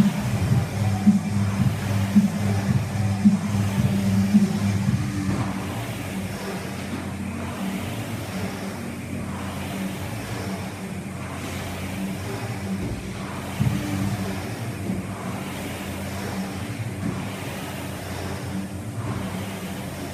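Indoor rowing machine fan flywheels whirring, surging with each stroke about once a second; the whirring drops in level about five seconds in. Music plays in the background.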